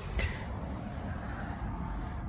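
Steady low outdoor background rumble, with a brief short noise about a quarter of a second in.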